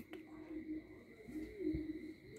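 Faint low cooing: one held note, then a note that rises and falls about a second and a half in.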